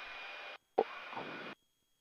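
Faint steady hiss of cockpit background noise, with one short soft sound a little under a second in, cutting off to dead silence about halfway through.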